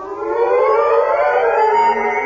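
Dramatic music sting at the end of an act in a radio drama: a cluster of sustained tones slides upward together, swelling in loudness, then holds.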